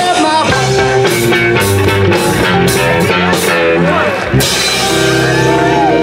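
Live blues band playing: electric guitar over bass and a drum kit, with drum and cymbal strikes through the first four seconds and a chord held after a short break near the end.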